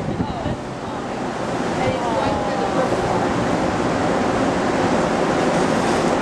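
Steady wind rushing over the camcorder microphone on the open deck of a cruise ship under way, growing slightly louder, with faint voices in the background.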